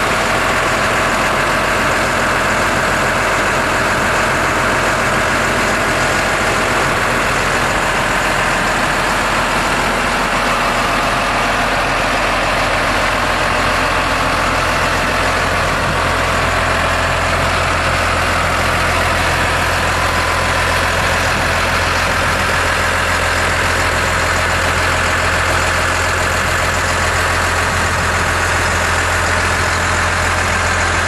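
Six-cylinder 411 cubic-inch diesel engine of a 2010 Case IH Maxxum 125 tractor idling steadily, its low hum growing stronger about halfway through.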